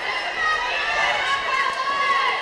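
Gymnasium ambience between volleyball rallies: distant voices of players and spectators echo in the gym, over faint high-pitched sneaker squeaks and footsteps on the hardwood court.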